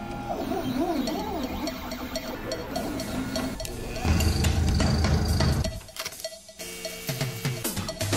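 Machine sounds: a 3D printer's stepper motors whine in wavering, gliding pitches, then a louder, lower cutting noise from a CNC milling machine comes in about four seconds in and stops near six seconds.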